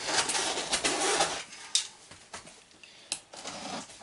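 Box cutter slicing through packing tape and cardboard on a large shipping box: a rasping scrape for about the first second, then a few sharp clicks and softer scrapes of cardboard.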